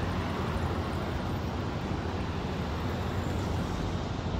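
Road traffic: cars driving past close by, a steady noise of engines and tyres on the road.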